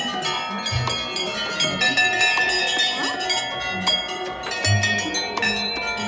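Brass temple bells struck over and over, many overlapping rings of different pitches starting at irregular moments, with a few low thumps among them.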